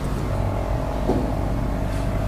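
Steady low hum of room background noise with a faint constant higher tone, and a brief faint sound about a second in.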